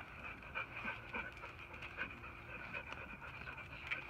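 A Labrador retriever panting softly in short, uneven breaths.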